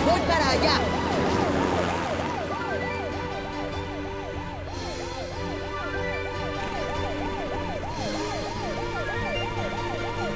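Emergency siren sound effect rising and falling rapidly, about three cycles a second, over background music.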